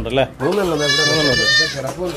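Goats bleating in a pen: a short bleat at the start, then one long, quavering bleat from about half a second in.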